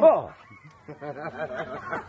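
A person laughing: a falling laugh at the start, then softer chuckling.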